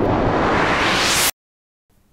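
A rising white-noise whoosh, an edited transition sound effect, sweeping upward in pitch for just over a second, then cutting off suddenly into dead silence.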